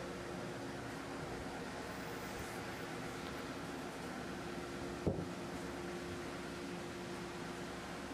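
A steady hum of shop machinery with a low tone, and one short thump about five seconds in as a heavy live-edge pecan slab is set down on the bench.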